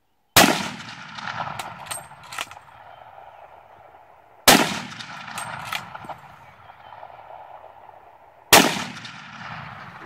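Three shots from a .458 Lott big-bore bolt-action rifle, about four seconds apart, each trailing off with a long echo. Between shots come a few sharp clicks as the bolt is cycled.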